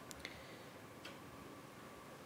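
Near silence: quiet room tone with a few faint clicks, one just after the start and another about a second in.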